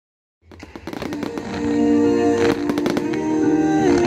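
Fireworks display with bangs and crackling, fading in after a brief silence, with music playing loudly alongside.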